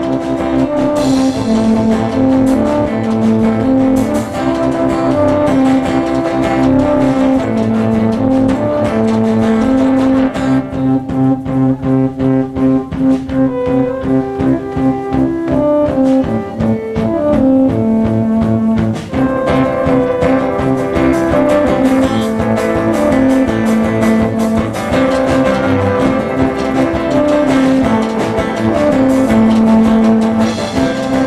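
A live band playing an instrumental passage on keyboards and guitars, with long held chords. In the middle the music changes to a pulsing rhythm at about two beats a second, then returns to sustained chords.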